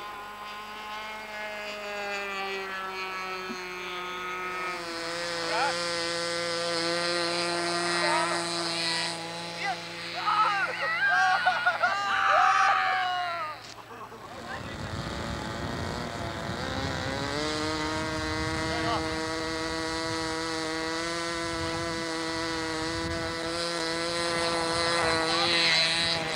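Small model aeroplane engine buzzing steadily at a high pitch in flight, its pitch drifting slowly. Voices rise over it a few seconds before the buzz cuts out, about halfway through. After a stretch of rumbling wind on the microphone, an engine buzz comes back.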